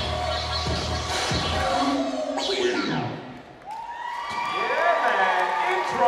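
Dance-routine music with a heavy bass beat that cuts out about two seconds in, followed by a falling swoop. The audience then cheers, with high children's shouts and whoops building near the end.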